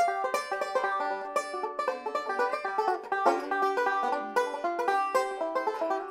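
Deering Classic Goodtime Special five-string banjo, a resonator model with a flat tone ring, picked in a fast, continuous run of bright, ringing notes.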